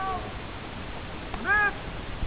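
A long, drawn-out shouted drill command, "Fire by file!", sung out in two rising-and-falling calls: one ending just inside the start and another about a second and a half in.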